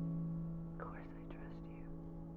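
A low piano chord ringing and slowly fading, with a soft whispered voice from about a second in.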